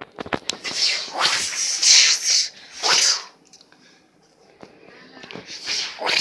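A few clicks, then two loud breathy hissing bursts, one long and one short, made by a child's mouth as sound effects for a spell.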